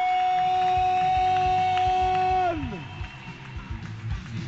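A ring announcer's shouted, drawn-out last syllable of the winner's name, held on one high note for about two and a half seconds and then falling away. Under it, rock music comes in with a steady drum beat.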